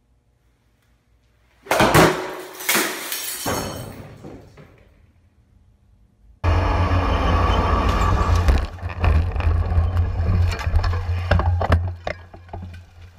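A sharp crash about two seconds in as a golf swing strikes an overhead light and it shatters, the clatter dying away over the next two seconds. From about six seconds in comes a loud, steady wind rumble on a helmet camera's microphone, with clattering knocks as mountain bikes crash into a grassy bank.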